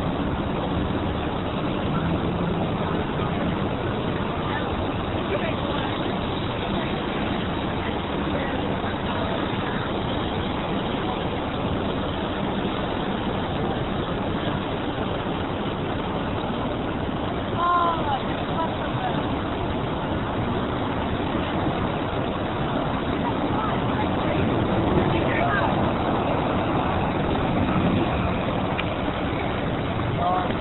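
Busy city street ambience: a steady wash of traffic and crowd noise with indistinct voices of passers-by, and a short, louder pitched call about eighteen seconds in.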